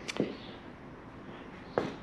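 A few sharp, brief clicks or knocks: two close together at the start and one more near the end, over quiet room tone.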